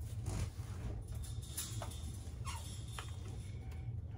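Faint rustling and a few light clicks from handling a plastic Flowbee spacer attachment and a ruler, over a low steady hum.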